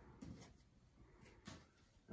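Near silence, with two faint, short rustles of a cotton T-shirt being handled and smoothed on a table.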